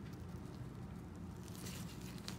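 Faint wet squishing and rustling of nitrile-gloved hands handling preserved fetal pig organs, with a few soft crackles in the second half over a low steady hum.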